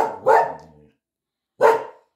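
Norwegian Elkhound barking: two quick barks at the start and a third near the end. It is barking to be let outside.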